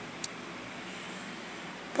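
Faint steady hum of distant road traffic, with one brief click about a quarter of a second in.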